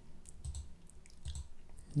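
Several faint computer mouse clicks, scattered sharp ticks over a low steady hum.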